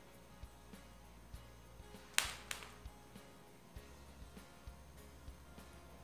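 One sharp clink of a metal spoon against kitchenware about two seconds in, amid faint small handling clicks while chocolate filling is spooned out of a bowl.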